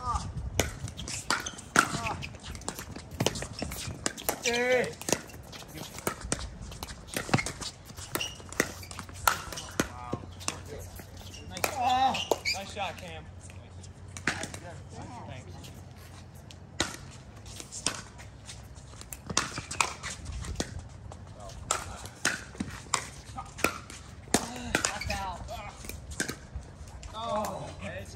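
Pickleball paddles striking a hard plastic ball and the ball bouncing on the court, sharp pops coming at irregular intervals through a rally. Players' voices call out briefly now and then.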